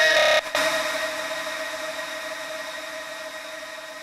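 The closing tail of a techno track: after a brief cut about half a second in, a sustained synth drone over a hiss of noise fades slowly out.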